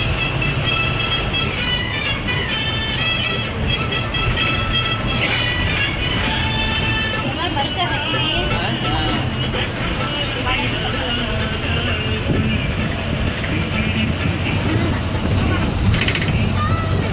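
Bus engine and road noise heard inside the cabin as a steady low rumble, with music and a singing voice playing over it.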